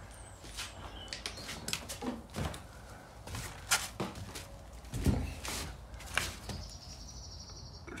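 Footsteps and scattered light knocks and scuffs as someone walks across a gritty garage floor, over a faint steady low hum.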